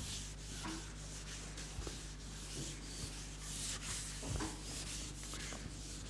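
Faint rubbing and scratching with a few light knocks, over a steady low hum.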